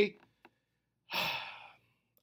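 A man's audible breath, a short sigh-like rush of air about a second in that fades out, taken in a pause between words.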